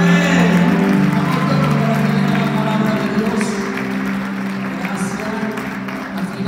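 Live worship music played through the hall's loudspeakers: sustained chords that shift about a second in, over crowd noise.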